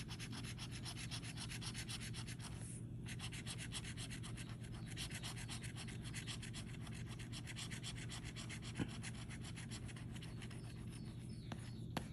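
Metal bottle opener scraping the coating off a paper scratch-off lottery ticket in fast, even strokes, with a short pause about three seconds in.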